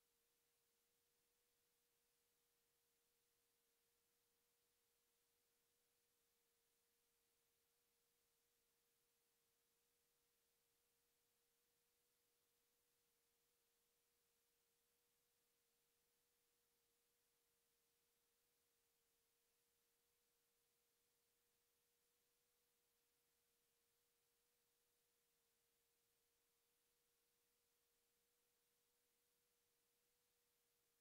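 Near silence: the audio track is all but muted, holding only an extremely faint steady tone just under 500 Hz.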